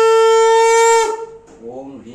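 Conch shell (shankha) blown in one long, steady note that cuts off about a second in. A man's chanting voice starts softly near the end.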